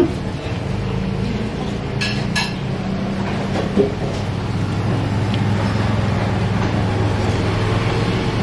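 A steady low hum, with a few light clinks of a spoon against a bowl about two seconds in.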